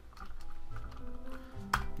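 Typing on a computer keyboard: a run of keystrokes spelling out a folder name, over soft background music.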